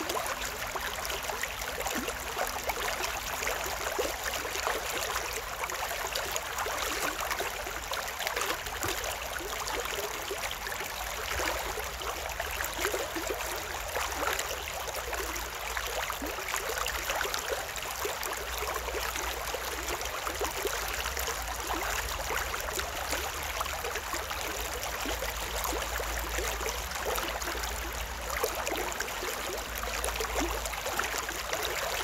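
Shallow stream running steadily over and between concrete stepping stones, a continuous babble of small trickles, with a faint low rumble underneath.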